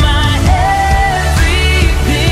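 Live pop-rock band music: a singer holding long notes over drums with cymbals, keyboard and electric guitar.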